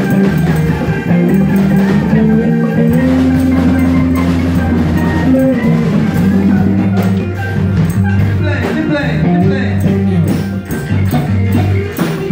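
Live band jamming, with electric guitar, keyboard and drums over a sustained bass line.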